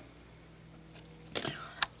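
Quiet room tone, broken about a second and a half in by a short soft noise and then a sharp click just before the end.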